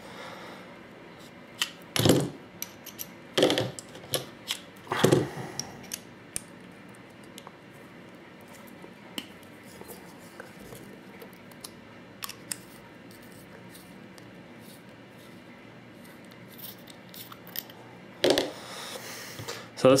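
Small metal paintball-marker regulator parts handled and unscrewed by hand: a few sharp clicks and knocks in the first few seconds, then faint light clicks, and a brief rub near the end.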